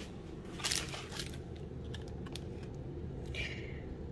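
A few short crinkling rustles and faint clicks of handling over a low steady room hum, the longest crinkle near the end from the foil wrapper of a coffee brew pod being picked up.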